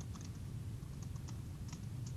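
Typing on a computer keyboard: faint, irregular keystroke clicks over a low steady hum.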